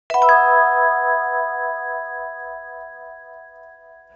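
A bell-like chime struck twice in quick succession at the very start, then ringing on with several clear tones and slowly fading away.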